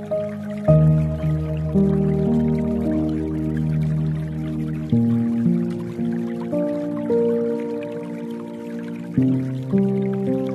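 Soft, slow piano music with a new chord about every four seconds and single notes picked out over it, laid over a faint dripping-water layer.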